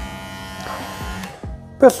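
WMark NG-208 cordless hair clipper running with a dense, high buzz from its motor and blade, stopping a little over a second in. It is running on a battery that is not fully charged and measures 5,735 RPM.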